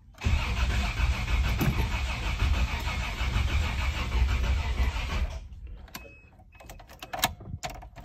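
1988 Toyota FJ62 Land Cruiser's 3F-E inline-six cranking and catching on starting fluid, running for about five seconds and then cutting out suddenly. It runs only on the starting fluid, a sign that no fuel is being delivered; the fuel pump is suspected. A few sharp clicks follow.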